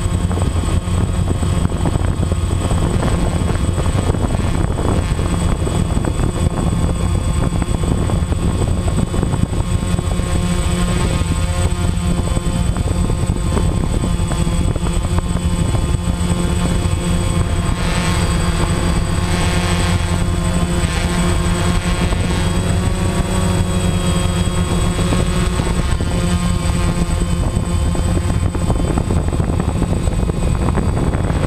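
DJI Phantom 1 quadcopter's four electric motors and propellers buzzing loud and steady, heard close from the camera on the drone in flight. The pitch wanders and bends in the second half as the motors change speed.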